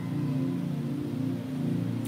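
Soft background music: sustained, gently shifting low chords, as from a keyboard pad, with no speech.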